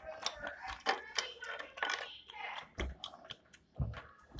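Small plastic toy furniture and figures being handled on a hard floor: a run of light clicks and taps, with a couple of soft low knocks near the end.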